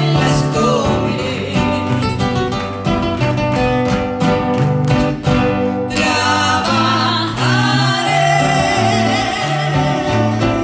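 A man and a woman singing a Spanish-language hymn together while strumming two acoustic guitars in a steady rhythm; the voices come forward strongly about halfway through.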